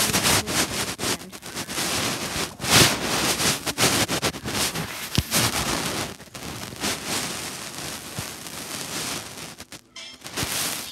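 Rustling, rubbing and bumping handling noise close to a phone's microphone: irregular scrapes and knocks as the device is moved about.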